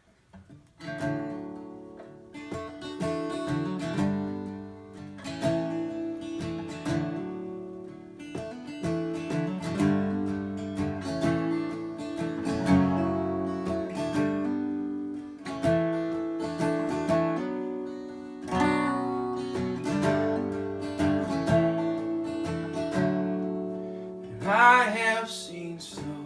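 Martin D-35 steel-string acoustic guitar played in a folk-bluegrass instrumental opening, picked and strummed in a steady rhythm, with a neck-rack harmonica. A brighter, wavering harmonica run comes near the end.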